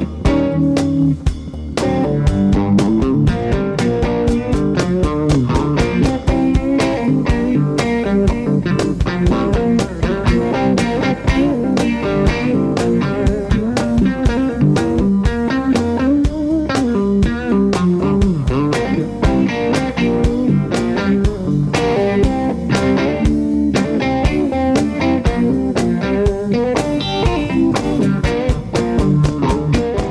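Live blues band playing an instrumental passage led by electric guitar, with drums keeping a steady beat underneath.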